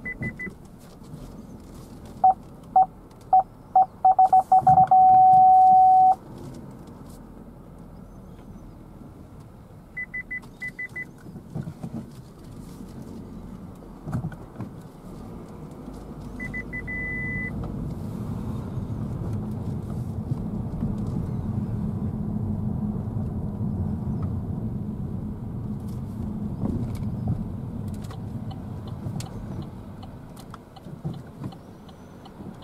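A car's parking-sensor warning beeps faster and faster, then holds a continuous tone for about a second before stopping, the sign that the car is reversing close to an obstacle. A few short higher-pitched beeps follow. From about halfway through, engine and tyre rumble builds as the car pulls away and drives along the road.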